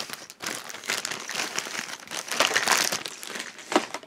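Clear plastic packaging crinkling as it is handled, a dense run of crackling that lasts about three and a half seconds.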